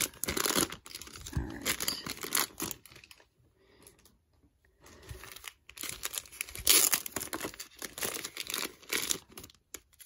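Clear plastic bag crinkling and tearing as sealed trading-card packs are pulled out past its sticky adhesive flap, in two spells of handling with a short lull about three seconds in.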